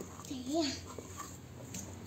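Plastic spatula scraping and stirring damp rice flour in an enamel bowl, faint and scratchy. About half a second in comes a short voice-like whine that rises and falls.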